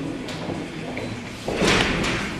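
Low murmur of a waiting audience in a hall, broken about one and a half seconds in by a sudden loud noise lasting about half a second.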